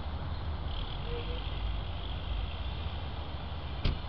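Steady low outdoor rumble, then a car door shutting with a single sharp clunk just before the end.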